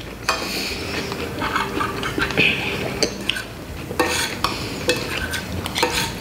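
Metal spoons and forks scraping and clinking against ceramic plates as several people eat, with a few sharper clinks in the second half.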